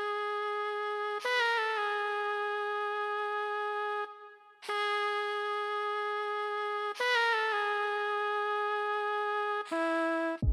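Saxophone sound from the Korg Triton software synth playing a simple solo melody of long held notes, each broken by a quick run of short notes stepping down. There is a short break about four seconds in, and a lower note closes the phrase near the end.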